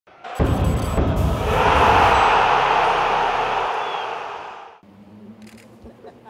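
Logo sting for a sports channel's intro: a deep hit about half a second in, then a loud, noisy swell that fades away by about five seconds.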